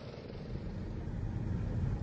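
A go-kart running on a track: a low, steady engine sound that grows a little louder toward the end.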